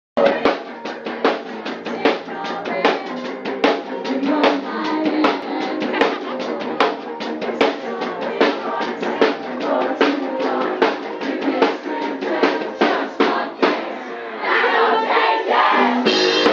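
Live rock band playing: a steady drum-kit beat of kick and snare under electric guitar. About fourteen and a half seconds in the playing thickens into a fuller, louder passage.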